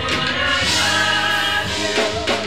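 Gospel praise team of mixed male and female voices singing together in harmony through microphones, holding sustained notes.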